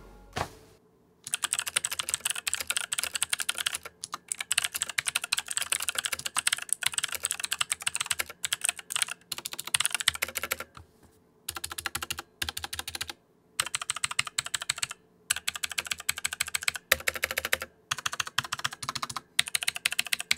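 Fast typing on a 1STPLAYER Firerose MK3 mechanical keyboard with Outemu Blue clicky switches: dense runs of sharp key clicks starting about a second in, in bursts of a few seconds broken by short pauses.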